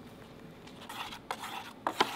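Milk powder sliding off a folded sheet into a glass beaker, with faint scraping and a few light taps of the sheet against the glass in the second half.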